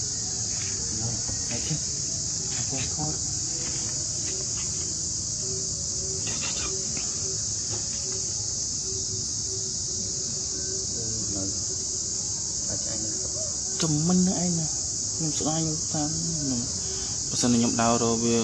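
Steady high-pitched drone of an insect chorus, unbroken throughout. A person speaks a few words over it near the end.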